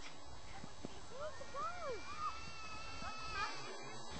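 Faint, distant voices calling out in the open, with some drawn-out, sung-like calls, over a steady low rumble.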